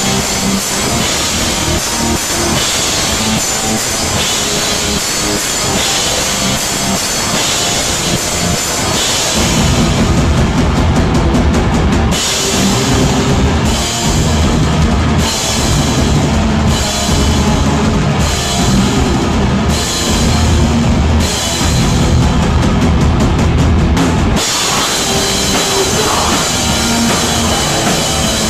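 Hardcore punk band playing live: distorted guitars, bass and drums with cymbals. About ten seconds in the low end gets heavier and the high end drops in and out in a slow stop-start pattern until near the end.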